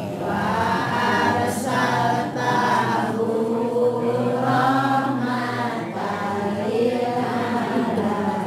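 A group of voices chanting together in a slow, wavering melody, a devotional chant sung in unison.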